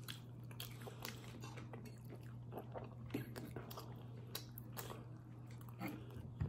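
A person chewing food with many faint, short mouth clicks and smacks, over a steady low hum.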